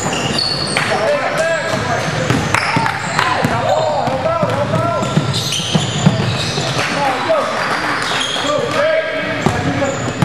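Live sound of a basketball game in an echoing gym: the ball bouncing and hitting the court, sneakers squeaking on the hardwood, and players and spectators calling out indistinctly.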